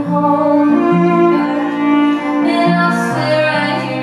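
Live band music: a woman singing a slow, held melody over bowed fiddle and low sustained string notes.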